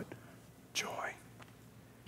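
A quiet pause with one short, faint spoken or whispered word about a second in.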